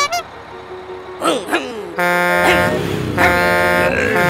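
Cartoon race-start sound effects: a last short countdown beep, then a few brief gliding sounds, and from halfway on a loud, steady, horn-like blast as the vehicles set off.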